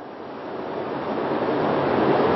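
Steady rushing background hiss with no distinct events, growing gradually louder.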